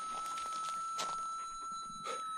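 QED pulse-induction metal detector's threshold tone from its speaker: a steady, even high hum that does not rise or break, meaning no target is under the coil and the ground balance is set. A faint tick sounds about a second in.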